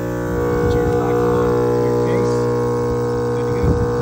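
HIBLOW HP-80 linear diaphragm aeration pump running with a steady electric hum, fitted with new diaphragms, a little louder from about half a second in. A short knock of the housing being handled near the end.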